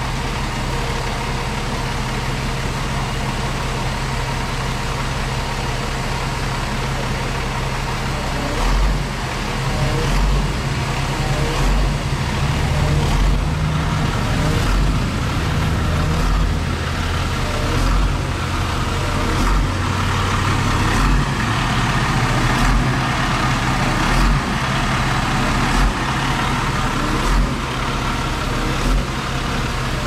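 Bucket truck's engine running steadily to power the hydraulic boom as it raises the bucket up the palm trunk. The engine speeds up and gets a little louder about a third of the way in.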